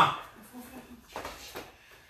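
A man's shouted word cuts off at the very start, followed by a quiet room with a couple of faint, brief soft noises about a second in.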